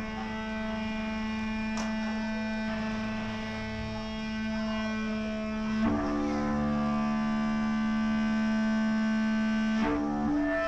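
Live band's electric guitars and bass holding long, ringing chords with no steady drumbeat, moving to a new chord about six seconds in.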